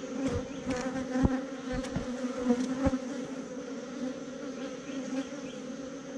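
Honeybees buzzing in a steady hum over the open frames of a hive. A couple of faint knocks as the wooden frames and hive tool are handled.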